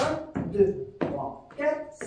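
A man counting dance beats aloud in French, one count about every half second.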